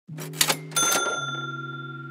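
Two quick clicks, then a bright bell-like ding that rings out and fades, over a low held tone that steps down in pitch about a second in. It has the pattern of a cash-register 'ka-ching' sound effect.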